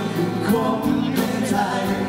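A man sings a pop song live through a PA, backed by acoustic guitar and a band with drums keeping a steady beat.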